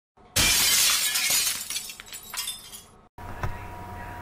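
A sudden loud crash, as of shattering glass, about a third of a second in, followed by a spray of clinking fragments that dies away over about two and a half seconds. Then a brief gap, a single click and a faint steady hum.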